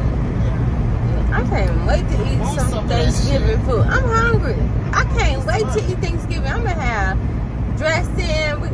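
Voices talking in a moving car, over the steady low rumble of the car on the road.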